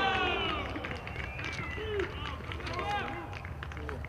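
Footballers' voices shouting on the pitch right after a goal: a loud yell at the start and more calls about one and three seconds in, with a few sharp clicks among them.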